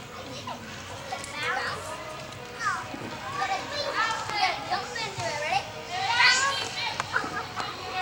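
Several high-pitched voices shouting and calling out over one another, with no clear words; the loudest shout rises and falls about six seconds in.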